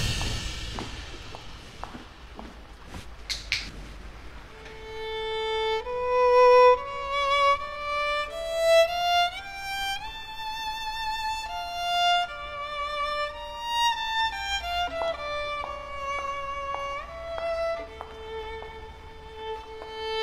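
Solo violin playing a slow melody with vibrato, coming in about four to five seconds in.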